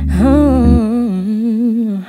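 A woman's voice holds one long sung note, rising at the start and then wavering with vibrato. It sounds over a chord on a Roland RD-300GX digital stage piano, which stops a little under a second in.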